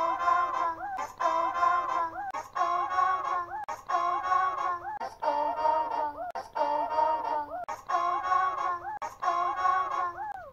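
Children's TV song: characters singing "Let's go, go, go!" over music, a short phrase repeating about once a second.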